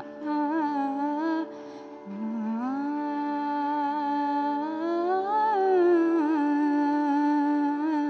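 A woman sings a Sanskrit invocation to Ganesha in Indian classical style, without words at this point: long held notes over a steady drone. After a short break, her voice slides up to a peak about midway and eases back down.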